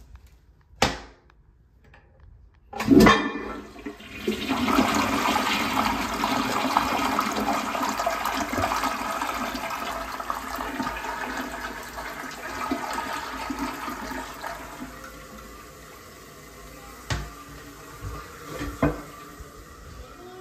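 A Kohler toilet flushing: a sharp clack about three seconds in, then a rush of water through the bowl that is loudest for several seconds and slowly dies away. A couple of short clicks near the end.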